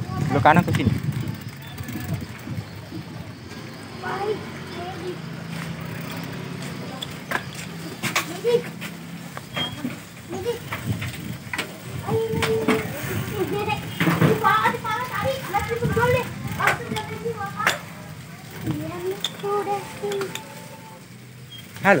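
Children's voices talking and calling out while riding bicycles, with scattered short clicks and rattles from the bikes. A low steady rumble runs through the first half.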